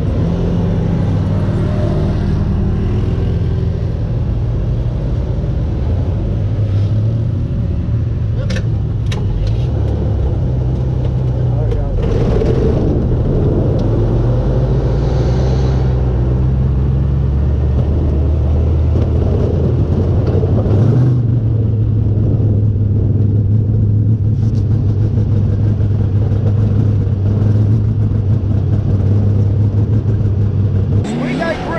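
Sprint car's V8 engine heard from the cockpit, running at low, steady revs as the car rolls out onto the dirt track. The note holds a fairly constant low pitch and steps up slightly about two-thirds of the way through.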